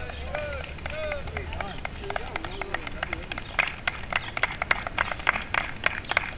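Indistinct voices of a group outdoors, with many quick, irregular sharp taps of footsteps from people running drills, growing busier from about two seconds in.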